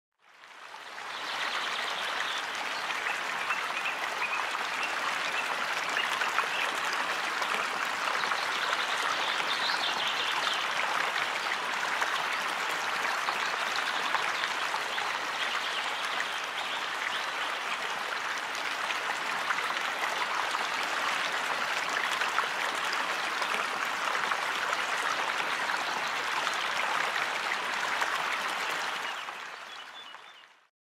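Steady rushing of a flowing stream. It fades in over the first second or two and fades out near the end.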